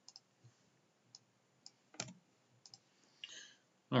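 Faint computer mouse clicks: several scattered single clicks, the loudest about two seconds in.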